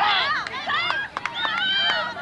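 Several high-pitched voices yelling and calling out at once, overlapping, with a few short clicks.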